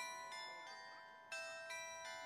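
Bells of a market-square clock's carillon chiming faintly, each struck note ringing on and slowly fading, with fresh notes struck at the start and again about two-thirds of the way in.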